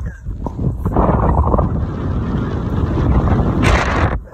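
Wind buffeting a phone's microphone held at an open car window while driving, over the car's road noise, with a louder gust near the end.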